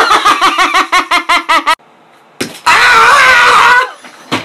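A man screaming. First comes a rapid run of short, pitched cries, about seven a second. After a brief pause there is one long, loud scream with a wavering pitch.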